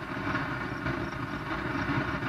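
A vehicle engine running steadily, heard as a low, even rumble with hiss.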